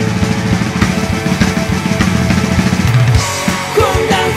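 Band music with the drum kit to the fore, a fast steady beat under bass and guitars; the pattern changes a little after three seconds in.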